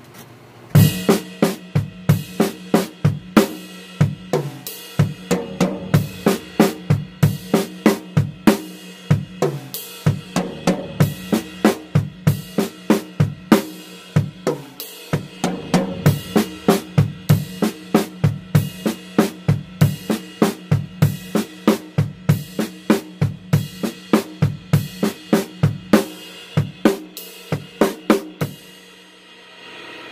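Acoustic drum kit played at a slow tempo: a double-stroke exercise with the sticks on the ride cymbal and snare drum over the bass drum, an even run of strikes that starts about a second in and stops shortly before the end.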